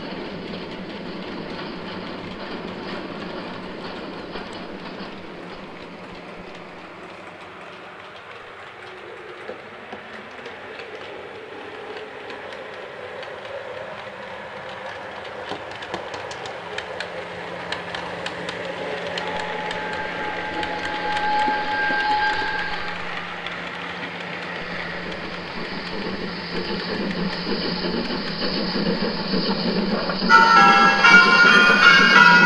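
Train running, with a clattering of wheels over rail joints and a whistle sounding steadily for about three seconds two-thirds of the way in; the sound grows louder toward the end.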